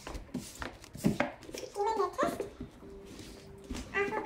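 Paperback books being set down and slid onto a wooden cabinet top, giving a series of irregular light knocks and taps.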